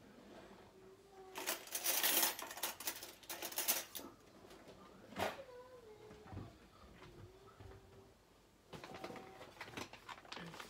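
A kitchen drawer opened and metal cutlery rattled as a spoon is picked out, then a knock as the drawer shuts, with a brief squeak after it. Rustling handling noise near the end.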